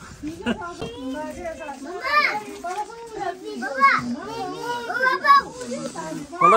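Young children's voices talking and calling out, with several high, rising-and-falling cries.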